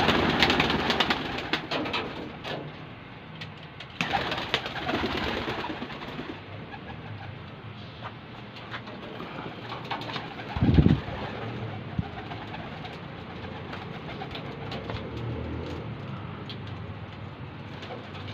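Domestic pigeons cooing, with loud rustling bursts of flapping wings near the start and again about four seconds in. A short low thump comes about eleven seconds in.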